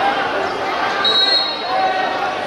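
Spectators and players talking and calling out at an outdoor small-sided football match. A short, steady, high whistle sounds about a second in and lasts under a second.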